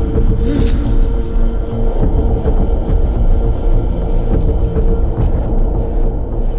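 Dramatic film score with held steady tones over a dense low rumble, with a metallic jingling over it.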